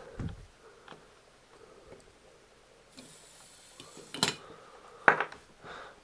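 Small planetary gear motor on a model bale wrapper's lifting arm, giving a faint steady whir for a couple of seconds as it raises a model round bale. Two sharp knocks about a second apart follow, the loudest sounds here, with light handling clicks near the start.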